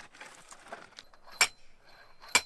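An axe chopping dry driftwood: one loud, sharp strike about one and a half seconds in with a short metallic ring, after a fainter knock.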